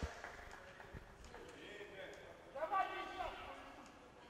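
Faint, echoing voices of players in an indoor sports hall, with one louder call about three seconds in, and a few light knocks of a ball or feet on the wooden floor.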